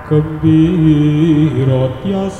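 A male voice singing a slow, wavering Javanese vocal line with gamelan accompaniment. The voice comes in just after the start and breaks off briefly about a second and a half in before going on.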